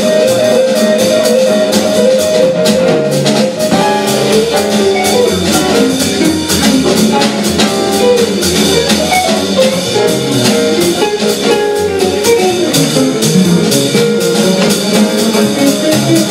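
Jazz band playing live, with an archtop guitar line and a drum kit's cymbals most to the fore over double bass and piano.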